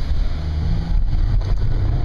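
Engine and road noise inside a moving Fiat 500's cabin, a steady low rumble.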